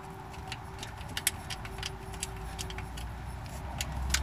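A metal hand tool scraping and clicking inside the drain plug hole of a Chevy 350's cast-iron engine block: irregular light metallic clicks and scrapes as it grinds at the blocked passage, which is packed with rust and sludge and where the tool feels to be hitting the cylinder.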